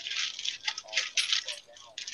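Small hard craft embellishments (stones, gems, beads) clinking and rattling against each other and a plastic storage box as someone rummages through them, a quick irregular run of light clicks and jingles.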